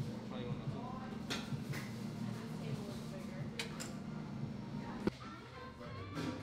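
Restaurant room sound: indistinct background voices and music over a steady low hum, with a few light clicks and one sharp knock about five seconds in.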